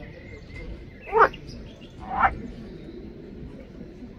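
Two short calls from pond-dwelling water frogs (Pelophylax sp.), about a second apart, over a steady low background.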